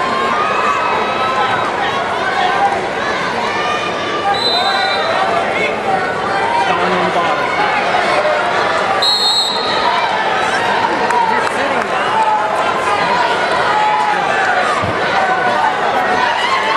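Crowd of spectators and coaches shouting over each other in a large echoing gym during a wrestling bout, with two short high-pitched squeaks about four and nine seconds in.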